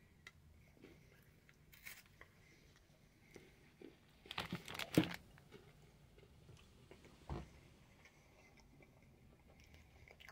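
Faint crunching of a bite into a crisp chocolate-covered Kit Kat wafer bar, a quick cluster of crunches about halfway through, with a few single crunches of chewing before and after.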